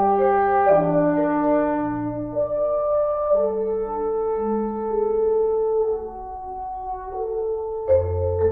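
French horn and marimba duet: the horn plays a slow melody of long held notes, one of them held for about two seconds in the middle, while the marimba adds a few soft mallet strokes near the start and near the end.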